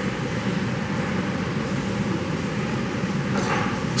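A steady low hum over an even hiss, unchanging throughout, with no distinct clicks or other events.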